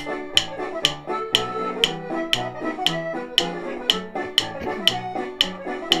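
Wooden drumsticks clicked together on every beat, a sharp tap about twice a second, over recorded instrumental music.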